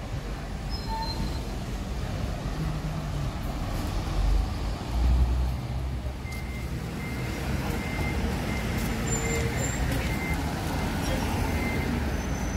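Road traffic on a city street, with a low rumble swelling about four to five seconds in. Through the second half a faint high beep repeats at uneven intervals.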